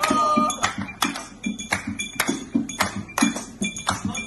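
Recorded music playing, with a quick, steady percussive beat of about four strikes a second.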